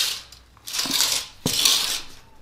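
Steel tape measure being taken away and its blade retracting into the case: short rattling scrapes with two sharp clicks about half a second apart.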